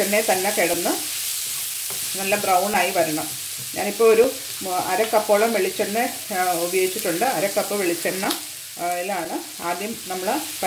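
Chopped onions sizzling in coconut oil in a nonstick frying pan as a spatula stirs them. Short broken stretches of a pitched sound lie over the sizzle.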